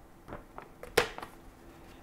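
A ballpoint pen pushed through a sheet of paper held in the hand: faint paper crackling, then one sharp pop about a second in as the tip breaks through.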